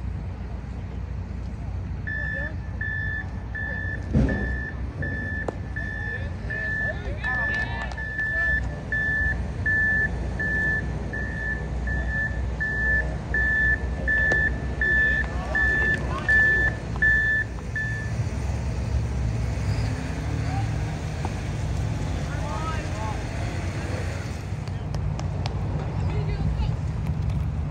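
Electronic beeping at one high pitch, a little more than one beep a second, starting about two seconds in and stopping about eighteen seconds in. Underneath it are a steady low rumble and faint distant voices.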